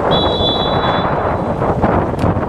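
Referee's whistle for a free kick: one steady blast of about a second, over wind rumble on the microphone.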